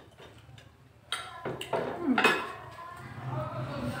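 Forks and cutlery clinking against plates as people eat at a table, with a few sharp clinks starting about a second in.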